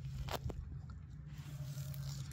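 Rustling and faint clicks of gloved hands handling corrugated plastic fuel-line loom and fittings, two small clicks early on, over a steady low hum.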